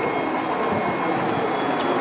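Steady background noise, an even rushing hum with no distinct events.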